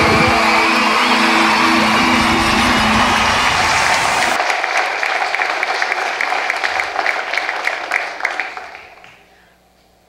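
Music ends about four seconds in, overlapped by audience applause that carries on alone and then fades away near the end.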